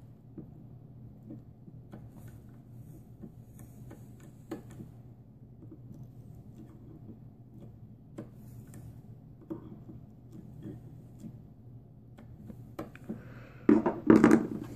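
Scattered light metal clicks and taps from pliers squeezing a wire vape coil on a rebuildable atomizer and from the box mod's fire button being pulsed to dry-fire the coil, over a low steady hum. The clicks come closer together and louder near the end.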